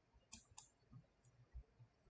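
Faint computer mouse button clicks: two quick clicks about a third of a second in, then a softer click and a low soft knock later.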